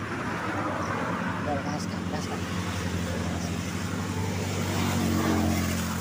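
A road vehicle's engine passing, its steady hum growing louder to a peak about five seconds in and then fading.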